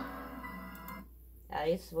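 Music playing from a laptop's speakers, a held chord that cuts off suddenly about a second in; a woman's voice starts half a second later.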